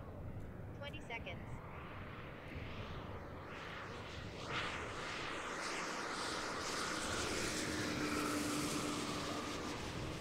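Electric-powered 86-inch RC Skyraider model making a low pass: the whir of its motor and large propeller swells over several seconds and is loudest near the end as it flies close.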